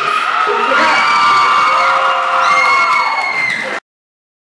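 Crowd cheering and shouting, cut off suddenly near the end.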